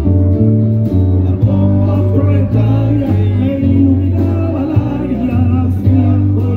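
Live band playing an instrumental passage: a bass guitar moving from note to note about once a second under electric guitar lines, with drums.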